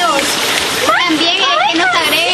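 Water of a small rocky stream running steadily, with people's voices calling and chattering over it.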